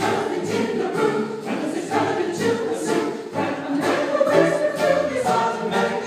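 Mixed choir of men and women singing a show tune together, accompanied by a keyboard, with a regular beat.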